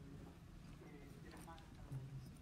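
Faint, indistinct speech: a voice heard at a very low level.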